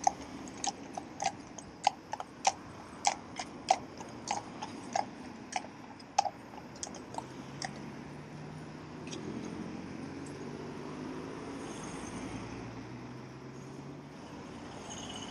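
Shod hooves of a pair of Friesian horses clip-clopping on tarmac at a steady walking rhythm, fading after about six seconds. From about eight seconds in, a car engine runs close by with a steady low hum.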